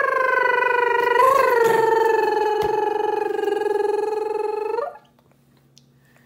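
A baby's long, steady, high-pitched vocal note, held for about five seconds with its pitch sinking slightly, then breaking off.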